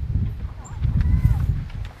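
A pause in loud ceremonial calling: uneven low rumbling outdoor background noise, with a faint distant voice about a second in.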